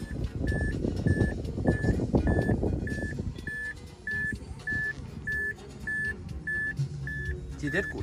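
Mazda 3's interior warning chime beeping steadily, about two short high beeps a second, with the driver's door standing open. Rustling from handling sounds under the beeps in the first half.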